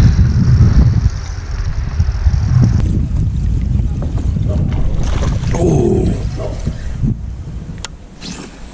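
Wind buffeting the action camera's microphone, a loud low rumble that is strongest in the first second and eases toward the end.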